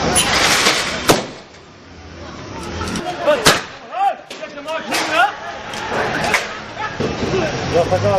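Sharp bangs of tear-gas shells being fired, one about a second in and a louder one about three and a half seconds in, with fainter bangs later. Shouting voices rise and fall between them.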